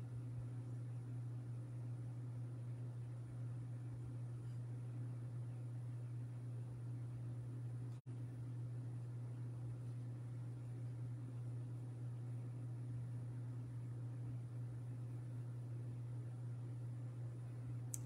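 Steady low hum over quiet room noise, with a momentary dropout about eight seconds in.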